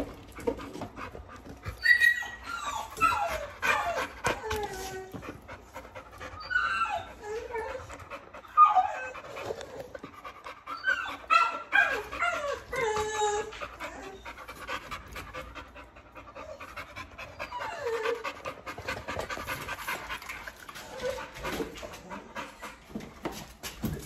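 Large American Bully dog giving high, excited whines in repeated bursts of falling calls while tugging at a towel, with short knocks and clicks throughout.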